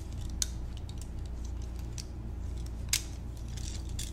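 Metal handcuffs being handled, giving a few sharp metallic clicks. The two loudest come about half a second in and just before three seconds, with a steady low hum underneath.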